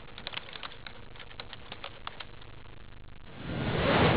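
Faint outdoor ambience with scattered short ticks over the first two seconds, then a swelling whoosh transition effect. The whoosh rises from about three and a half seconds in and peaks at the end, where it is the loudest sound.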